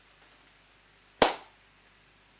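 A single sharp click or knock about a second in, briefly ringing out, over near-silent room tone.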